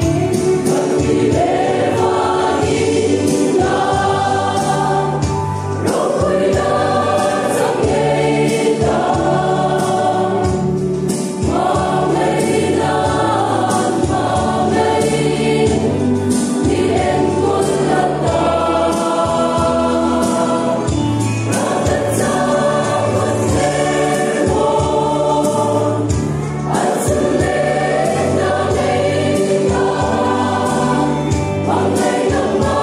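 Mixed choir of young men and women singing a gospel hymn together, loud and steady, in sung phrases that swell and break every few seconds.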